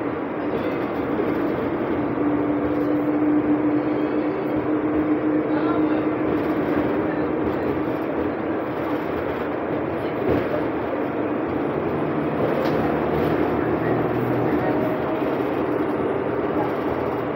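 Cabin noise inside a moving 2020 Nova Bus LFS diesel city bus: steady engine and road noise. A steady tone holds for several seconds from about two seconds in.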